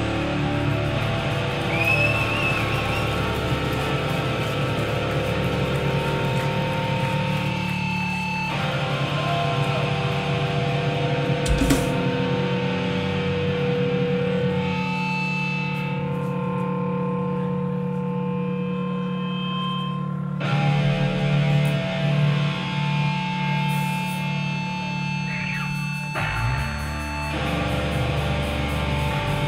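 Distorted electric guitars played live through amplifiers, holding long ringing notes without drums.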